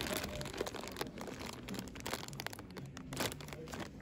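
Plastic zip-top bags of costume jewelry crinkling as they are handled, an irregular run of crackles.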